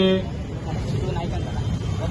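A man's voice breaks off just after the start, leaving a steady low rumble of outdoor street background noise.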